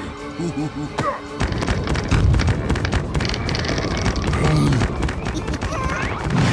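Cartoon soundtrack: music and wordless character vocalizing, joined from about a second and a half in by a continuous heavy low rumble.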